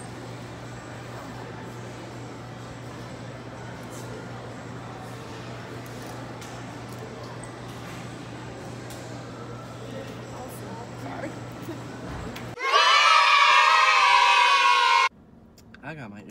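Low steady room hum with faint background sound for most of the stretch, then a loud, high-pitched voice, like a shriek, for about two and a half seconds near the end that cuts off suddenly.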